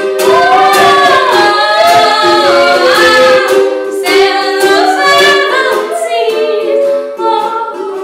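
A woman singing with a ukulele strummed along, unplugged. The voice carries a sustained, gliding melody over the strummed chords, easing off near the end.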